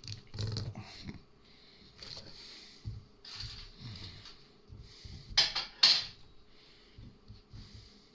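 Chopped vegetables (cauliflower, cucumber and carrot pieces) handled and pressed down by hand into a glass jar, with scattered rustles and light knocks. Two louder, sharper clatters come a little past halfway.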